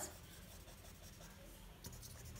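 Faint scratching of a felt-tip marker writing on paper, with a light tap near the end.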